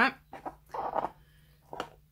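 A vinyl record being picked up and turned over by hand: a brief rubbing handling noise about a second in and a light tap near the end, over a faint steady low hum.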